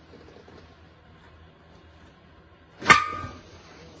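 A hot-glue pulling tab pops off a 1982 Honda ATC 185S metal fuel tank during paintless dent repair: one sharp snap about three seconds in, and the tank's sheet metal rings briefly after it. This is the dent being pulled.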